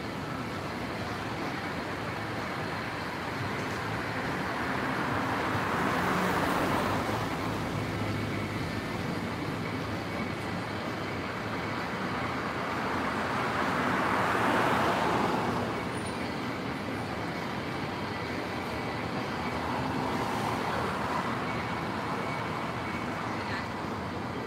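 Road traffic on a city street: vehicles passing by, each rising and falling in tyre and engine noise. There are three pass-bys, the loudest about fourteen seconds in, with others about six and twenty seconds in.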